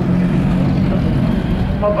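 Engines droning steadily across an autocross dirt track, a low even hum with overtones and little change in pitch.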